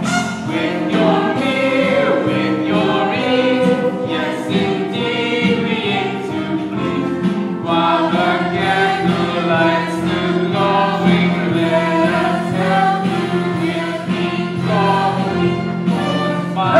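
Large stage ensemble singing a choral musical-theatre number over instrumental accompaniment, held notes and many voices together throughout.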